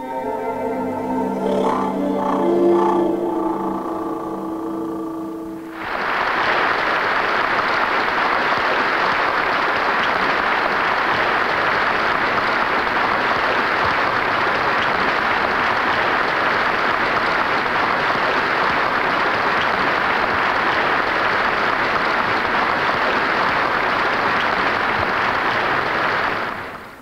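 Instrumental music holds its last notes, then breaks off about six seconds in and steady audience applause follows.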